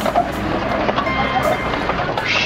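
Jeep engine and drive noise heard inside the cab as it climbs a steep rock slope, with a rock song playing along underneath.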